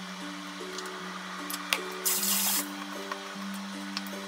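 Background music with a steady, stepping melody. About two seconds in, a short half-second hiss of liquid seasoning is poured onto sliced vegetables in a wooden bowl, just after a light click.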